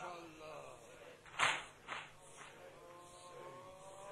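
Rhythmic slaps keeping time in a mourning recitation, typical of chest-beating. A sharp slap about a second and a half in is followed by a softer one about half a second later, with a faint voice holding a note near the end.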